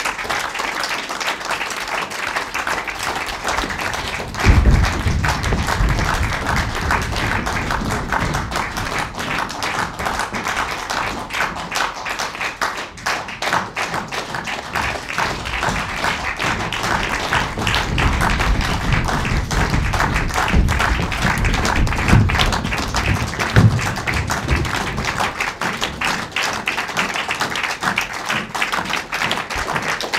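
Theatre audience applauding, with music beneath. Low thuds join the clapping from about four and a half seconds in.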